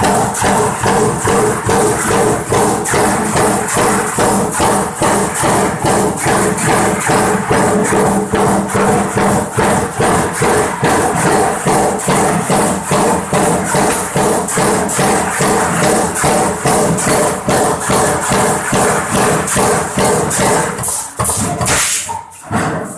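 High-speed stamping press line running continuously at about 165 strokes a minute, each stroke a sharp metallic clack, with a steady machine hum underneath.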